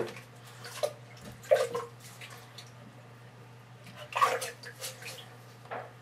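A few brief splashes and drips of water as wet aquarium filter parts are handled over a sink, over a steady low hum.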